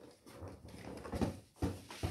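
Light, irregular knocks and taps of handling, several soft thuds at a low level with a few stronger ones past the middle.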